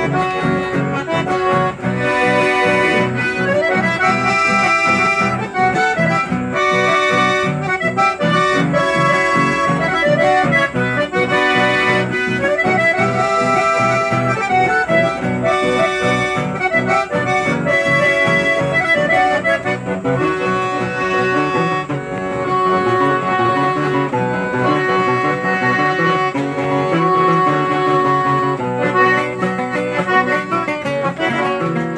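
Instrumental folk-band music led by an accordion, with a guitar keeping a steady rhythmic accompaniment.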